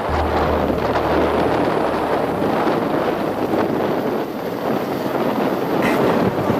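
Fast, muddy river rushing over rocks, a steady noise of running water, with a low rumble of wind on the microphone for the first couple of seconds.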